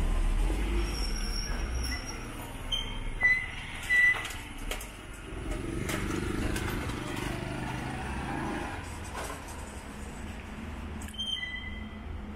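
Street sound along a shallow canal: a car's low engine rumble as it passes slowly, then the steady rush of the canal's running water. A few short high-pitched chirps come around three and four seconds in and again near the end.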